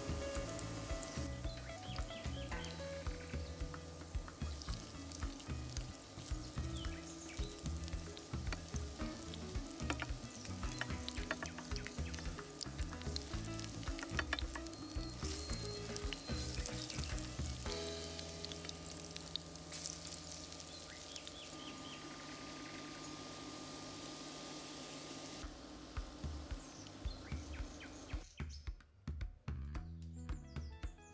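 Grated butternut squash fritters sizzling and crackling in hot sunflower oil in a frying pan. The sizzle cuts off suddenly near the end.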